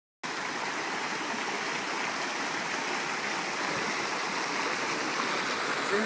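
Flowing river water rushing steadily, coming in after a moment of silence at the very start.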